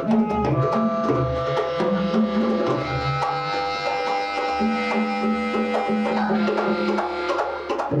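Live acoustic band music: long held saxophone notes over hand drums, with the drumming thinning out through the middle and picking up again near the end.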